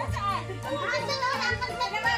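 Music playing under the chatter of a group of children and adults talking and calling out over one another.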